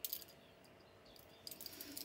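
Faint light clicks and small tinkles of small objects being handled on a cabinet top: a couple just after the start, then a short cluster in the second half.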